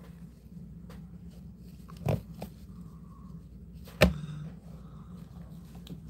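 Quiet handling noises from hands and small scissors working at eggs in a plastic tub: a few soft knocks and one sharp click about four seconds in, over a low steady hum.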